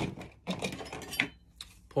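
Metal bricklaying hand tools knocking and clinking as they are handled in a tool kit box, with a sharp knock at the start and a few lighter clicks and rattles after.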